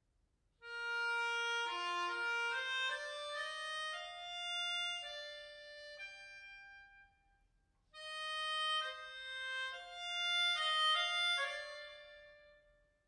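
Hohner Fire Melodica 32 playing a melody of held notes and chords. The first phrase begins about a second in and dies away around seven seconds; after a short pause a second phrase starts near eight seconds.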